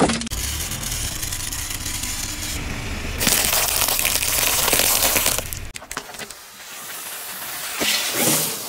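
A car tyre rolls slowly over small objects on asphalt and crushes them: a sharp crack right at the start, then steady crunching. From about three seconds in, a louder stretch of dense crackling comes as peanuts in their shells are cracked under the tread.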